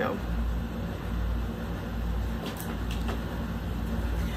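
Steady low background rumble, with a few faint crinkles of a small plastic zip bag being handled a little past halfway.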